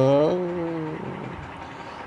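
A man's voice holding the end of a long sung note that steps slightly down in pitch and fades out about a second in, leaving only faint background hiss.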